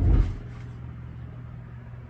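A brief low rumbling thump at the very start, then a steady low hum.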